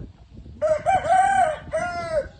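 A rooster crowing: one loud call in two parts, each rising and falling in pitch, with a short break between them near the end.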